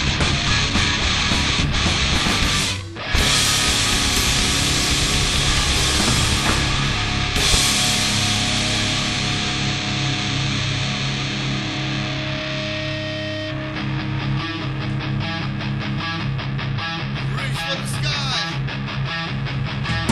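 Heavy metal band playing live: distorted electric guitars, bass and drums with crashing cymbals. The music stops dead for a moment about three seconds in, then comes back. In the second half the cymbals drop away and a choppy, stop-start riff with drum hits takes over.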